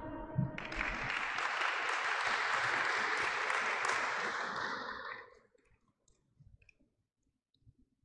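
Applause from a small group of people, starting about half a second in and fading out after about five seconds, then near silence.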